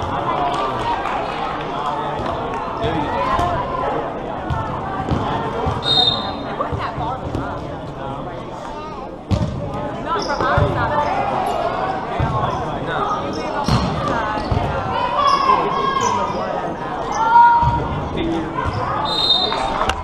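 Volleyball being struck with sharp smacks several times during a rally, with players and spectators calling out and cheering around it, and the echo of a large hall. A short referee's whistle sounds about six seconds in and again near the end.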